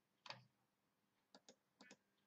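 Near silence broken by a few faint short clicks: one soft one just after the start, then three quick ones about a second and a half in.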